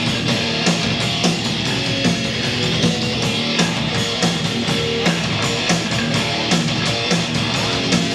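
Live band playing an instrumental passage on electric guitar, bass guitar and drums, loud with a steady beat.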